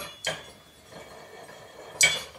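Small hard parts of a Vanguard Porta Aim shooting rest clicking and rubbing as the platform is worked off its mini tripod head. There is a click about a quarter second in, faint rubbing after it, and a sharp clink near the end.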